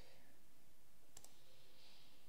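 A single computer mouse click about a second in, over faint steady room hiss.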